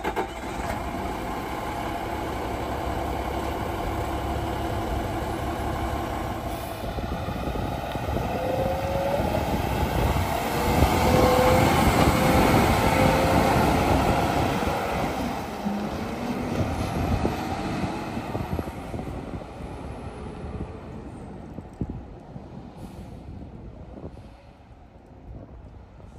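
Garbage truck's Cummins ISL9 inline-six diesel running, then pulling away. It is loudest about halfway, with a brief thin squeal, and fades as the truck drives off down the road.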